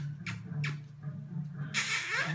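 A puppy's paws scratching and scrabbling at a sliding glass door, a few short scratchy strokes in the first second, then a louder noisy burst near the end. Faint music plays underneath.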